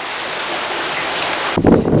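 Pumped seawater pouring and splashing steadily into the shellfish-growing tanks. About a second and a half in it cuts off suddenly to a low wind rumble on the microphone.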